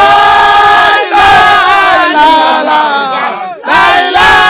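A group of men chanting loudly together in unison, holding long notes in phrases broken by a short breath about a second in and another just before the end.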